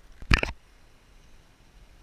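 A single brief, loud rush of noise about a third of a second in, then a faint, steady outdoor background.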